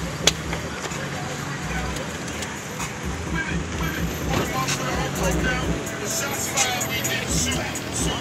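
Car engines running as cars pull away and drive past, mixed with music and people's voices. A single sharp click sounds just after the start.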